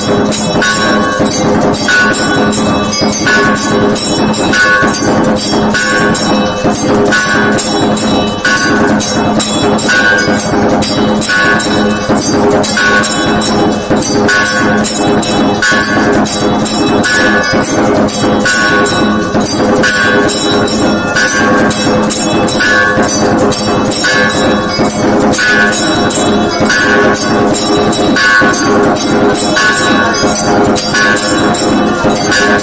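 Loud temple music of ringing bells and percussion, keeping a steady, repeating rhythm.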